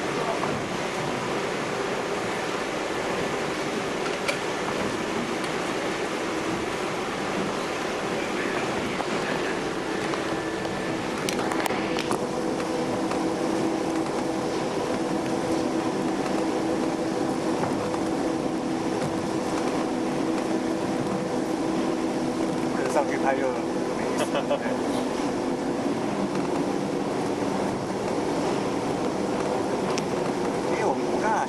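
Passenger ferry's engines running under way, heard inside the cabin as a steady drone with a low hum that grows stronger about twelve seconds in.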